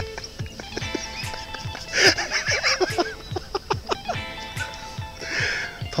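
Background music with a steady low beat and sustained tones, with a louder wavering burst about two seconds in.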